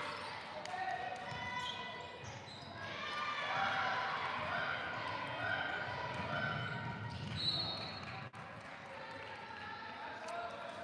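A basketball dribbling on a hardwood gym floor among the voices of players and spectators, echoing in a large hall, with a brief high squeak about seven and a half seconds in.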